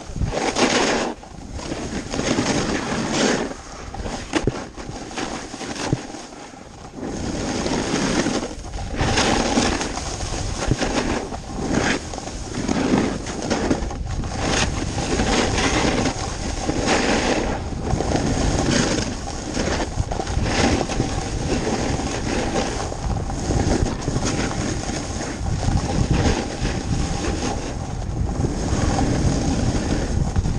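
Snowboard sliding and carving down packed snow, the edge scrape surging and easing every second or two with the turns, mixed with wind rushing over the action camera's microphone.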